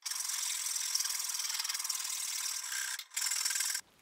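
Hand rasp filing an oak axe handle, rounding off the cut edges: a steady scraping hiss with a brief break about three seconds in, stopping just before the end.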